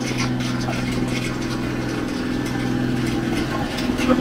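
Parked delivery truck's engine idling, a steady, even hum with no change in speed.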